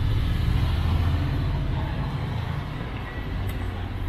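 City street traffic: a passing motor vehicle's engine rumble that fades away about two and a half seconds in, leaving a steady background of street noise.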